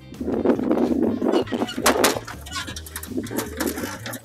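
Electric beach wagon driven up an aluminum carrier ramp: the rumble of its motor and balloon tires on the ramp for about two and a half seconds, with a sharp clank about two seconds in. Background music with a steady bass plays underneath.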